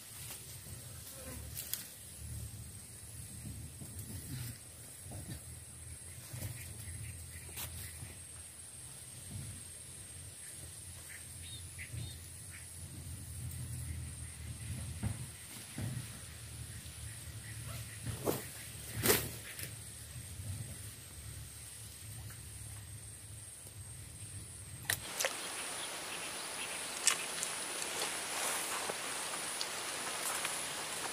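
Quiet outdoor ambience: a steady low rumble with scattered light rustles and clicks, one sharper click about two-thirds of the way through. About 25 seconds in, the rumble gives way to a steady hiss, and a faint high whine runs underneath throughout.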